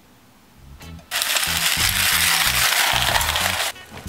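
Canister vacuum cleaner dragged on its wheels across brick paving: a loud, even noise that starts about a second in and cuts off abruptly near the end, over background music with a steady bass beat.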